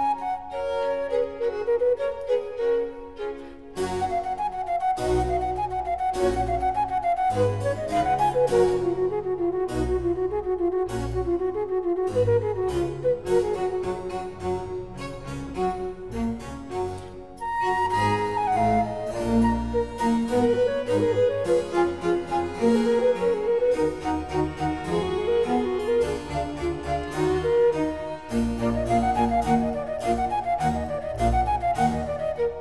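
Baroque concerto for transverse flute with strings and harpsichord continuo. The flute and violins play running melodic lines over a plucked harpsichord and bass line, with a short break about halfway through before a new phrase starts high.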